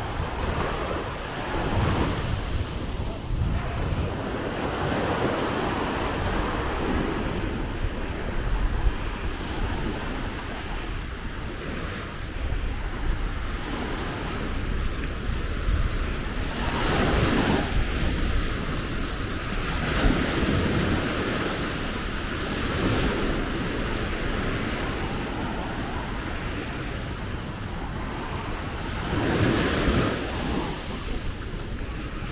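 Small ocean waves breaking and washing up a sandy beach at the waterline, swelling louder in washes every few seconds, strongest a little past halfway and near the end. Wind rumbles on the microphone underneath.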